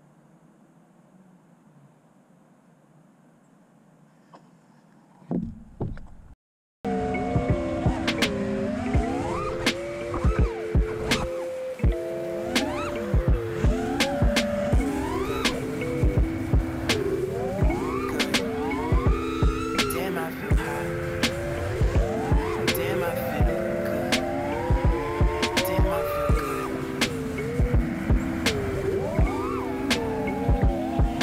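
Faint for about five seconds, then, about seven seconds in, an FPV quadcopter's brushless motors (T-Motor F40 mid-KV, on a 5S battery) are heard in flight. Their whine holds steady and then swoops up and down in pitch with the throttle. Frequent sharp clicks break through it.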